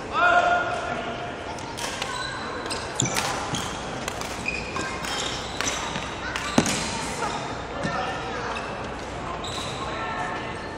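A player's footsteps and lunge landings on a wooden sports-hall floor, with sharp impacts about three and six and a half seconds in, over voices echoing in the hall. There is a held vocal call near the start.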